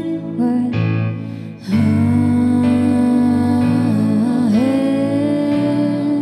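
Live pop ballad: a singer's voice carries short phrases, then holds one long note from about two seconds in, with a slight bend in pitch near the end. Soft instrumental accompaniment runs underneath.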